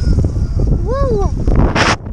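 Wind buffeting an action camera's microphone out on the sea as a kite foil board is ridden, a dense, rumbling noise. Just before the end a short splash as the camera dips into the water.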